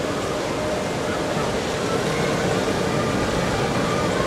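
Steady outdoor theme-park ambience: a continuous rushing rumble with faint distant voices mixed in.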